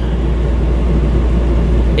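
RV rooftop air conditioner running steadily: a low hum under an even rush of fan air.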